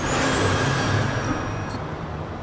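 Whoosh sound effect: a rush of hissing noise that starts suddenly and fades away over about two seconds.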